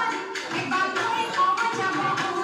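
Assamese Bihu folk dance music: rapid drum beats under a wavering melody line.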